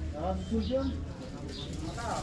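Indistinct voices of people working, with no clear words, mixed with short low cooing calls. A low steady hum fades out about halfway through.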